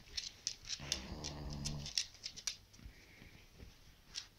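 A sleeping pug snoring: one buzzing snore lasting about a second, starting about a second in, with a run of small sharp clicks and snuffles around it in the first couple of seconds.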